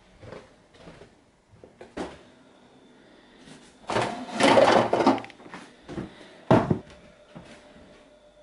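Kitchen handling: a fridge door is opened and a plastic water jug is taken from its door shelf, with a loud stretch of rattling about halfway in, then a sharp thud of a door a second or so later, and lighter knocks and clicks around it.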